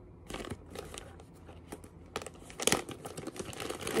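Crinkly packaging being handled and rustled, with irregular crackles that come thick and fast, loudest a little past halfway.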